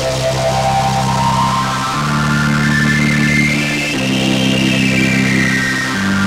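Behringer Solina String Ensemble synthesizer playing sustained string-machine chords through an OTO Machines BOUM, changing chord about every two seconds. A slow sweep rises in pitch over the chords and falls again near the end.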